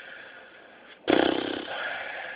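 A motor running with a fast, pulsing rumble, starting abruptly about a second in after a quiet first second.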